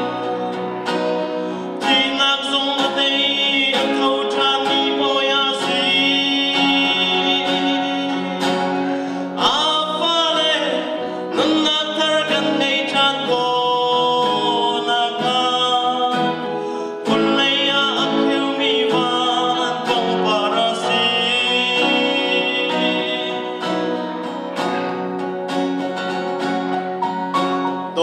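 A man singing a song into a microphone, accompanying himself on a Fender acoustic guitar, with held notes and gliding pitch.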